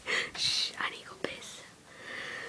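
A girl's breathy, whispered voice in short bursts, with a single click a little past a second in.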